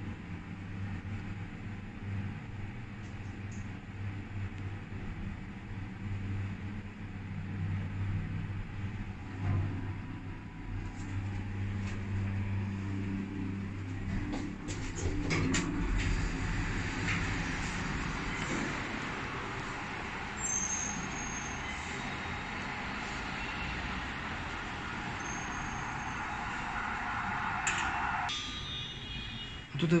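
Inverter-driven Otis passenger lift travelling down, with a steady low hum. It stops with a few clicks about halfway through. A steady hiss follows and cuts off shortly before the end.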